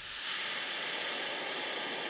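A steady, high, even hiss with very little low end: the sound effect under an animated TV title card.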